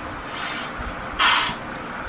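Two short hisses of breath at a clarinet mouthpiece, with no note sounding; the second, a little past a second in, is louder.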